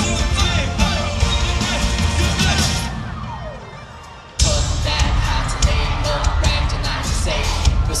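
Bass-heavy pop dance track with singing, played loud through a concert PA. About three seconds in the beat drops out and a falling sweep fades into a brief lull, then the full beat cuts back in suddenly about four and a half seconds in.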